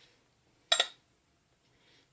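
A single short clink of a pot or kitchen utensil about three-quarters of a second in, with near silence around it.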